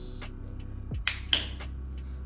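A few short crackles and clicks of plastic as a foaming cleanser bottle's seal is pulled off and the bottle opened, the sharpest a little past halfway. Background music with a low, steady beat plays underneath.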